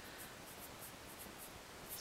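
Black felt-tip marker writing on paper: faint, short scratchy strokes as the numbers are written.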